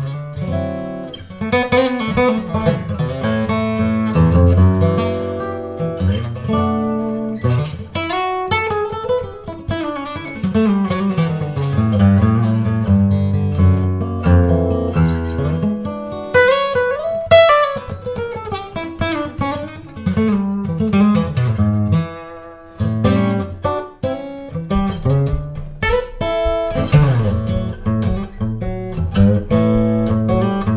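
Solo steel-string acoustic guitar, a handmade Gallinaro Aqstica OSH with Bolivian rosewood back and sides and a Sitka spruce top, strung with heavy 12-gauge strings. It plays an improvised line of picked single notes mixed with chords, with a few notes gliding in pitch and brief breaks about three quarters of the way through.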